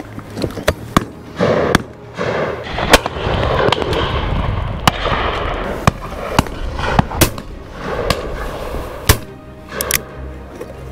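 Repeated shotgun shots, over a dozen in ten seconds, firing at driven birds. A few are close and loud, the loudest about three seconds in and again near the end; the rest are fainter reports from farther along the line.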